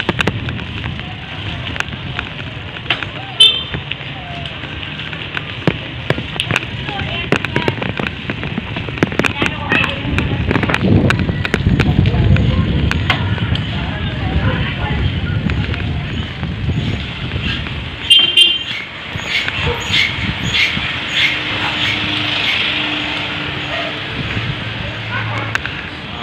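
Wind rumbling over a handlebar-mounted phone's microphone during a bicycle ride on city streets, with traffic passing, scattered knocks from the bike and mount, and two short high-pitched beeps, one about three seconds in and one about eighteen seconds in.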